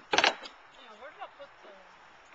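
A spoken word ends just after the start, then a quiet outdoor background with a few faint voice sounds.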